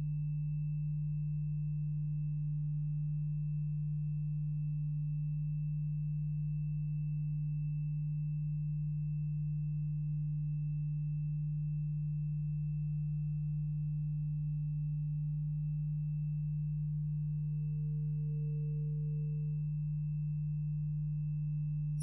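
Steady electrical hum from the sound or recording system: a low, unchanging drone with a faint higher whine above it.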